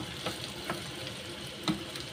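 An egg-and-vegetable omelette sizzling steadily in a frying pan, with a few light taps of the metal spatula against the pan, the clearest about one and a half seconds in.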